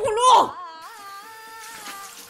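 A young woman's short cry of pain at the start, with a sharp bend in pitch, over held background-music tones.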